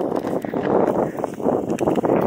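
Steady rustling and crackling noise with wind on the microphone, while the camera is held low and moving over the grass.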